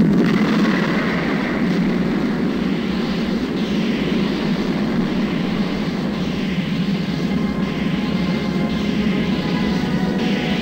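Film sound effect of a spacecraft's rocket engines firing: a sudden loud blast at the start, then a steady, dense rushing rumble.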